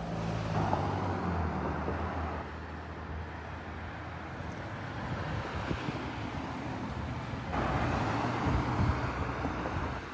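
Road traffic: cars passing close by on the street. One goes past with a low engine hum and tyre rush in the first couple of seconds, and another rushes past near the end.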